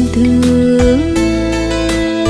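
Slow Vietnamese bolero played by a live band: a guitar melody of long held notes over keyboard, bass and drums, stepping up in pitch about a second in.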